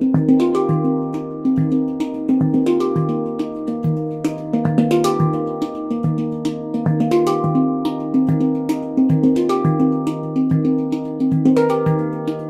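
Xenith Clarity handpan in an Eb Arrezo scale, its thin steel shell played with both hands in a steady rhythmic groove. The low Eb center note is struck again and again, under ringing higher tone-field notes and sharp light taps.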